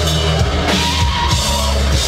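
Live heavy rock band playing loud and dense: electric guitar and bass holding low sustained notes over a drum kit with constant cymbal wash.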